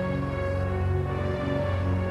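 Keyboard intro music: sustained synthesizer chords held over a low line that changes note about every half second, with no drums.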